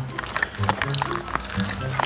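Background music with low held notes that change every half second or so, overlaid with many short, sharp clicks.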